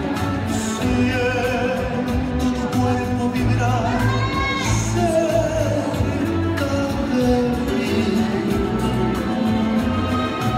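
Slow bolero dance music with a singer, playing steadily.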